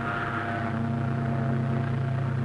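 A steamship's whistle sounding one long, steady, low blast.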